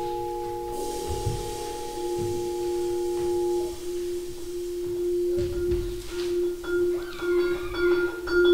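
Vibraphone playing slow, long-ringing notes that hold and fade, with a few new higher notes struck near the end. A few soft low thumps sound under the notes.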